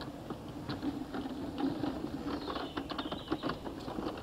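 Crunching and clicking of movement over a gravel and paved courtyard: a run of irregular small clicks over a low steady hum.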